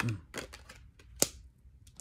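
Tarot cards being handled at a table: a few separate sharp clicks and slaps of card stock, the loudest a little past a second in.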